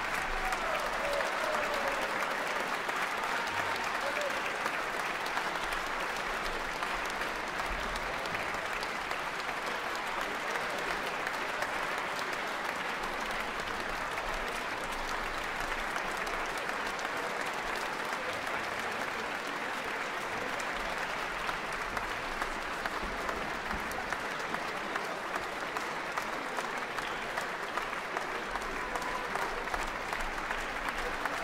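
Live audience applauding steadily in a concert hall.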